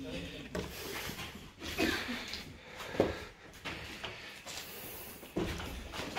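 Indistinct talk of a few people in a small room, with several short knocks and thumps, the sharpest about three seconds in.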